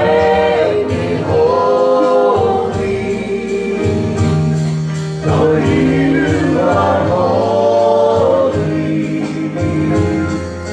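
A small group of worship singers, two men and a woman on handheld microphones, singing a gospel worship song in held, sustained notes over instrumental accompaniment with bass and a steady light beat.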